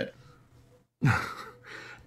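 A man's short, breathy laugh, a sudden exhale about a second in with a brief falling voiced part.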